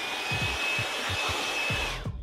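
DeWalt 20V cordless blower running, a steady rush of air with a high whine, blowing sawdust off a sanded wooden board before it is stained. It cuts off near the end.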